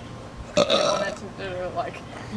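A man burps once, loudly, about half a second in, lasting about half a second, followed by a brief murmur of voice.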